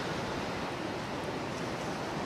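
Steady, even hiss-like background noise from the open live field feed, with no distinct events.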